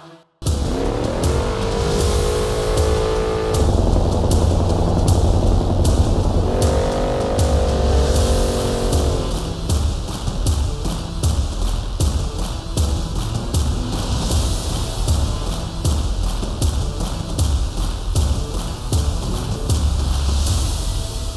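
Ford 7.3L Godzilla pushrod V8 in a Cobra Jet Mustang revving hard through a burnout, with the rear tyres spinning, under music with a steady beat.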